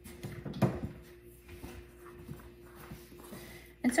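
Faint kitchen handling noises: a sharp knock about half a second in, then soft scattered knocks and rustles over a steady faint hum.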